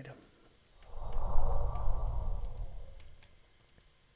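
A man's long breath out close to the microphone, about two and a half seconds long, rising and fading, with a low rumble where the air hits the mic. A few faint clicks follow near the end.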